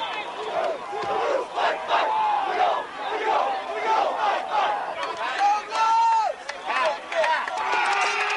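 Many male voices shouting and whooping over one another in short, rising and falling yells: a football team yelling together in a huddle.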